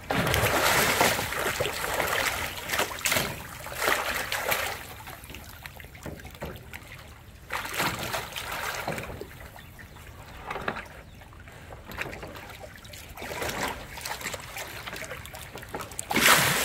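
A tiger splashing and sloshing the water of a round metal stock tank as it plays with a floating block of ice. The splashes come in repeated bursts, heaviest in the first few seconds, then again every few seconds.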